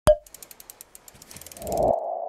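Logo-animation sound effects: a sharp hit with a brief ping, then a quick run of about ten ticks a second, and near the end a whoosh that swells into a steady electronic tone.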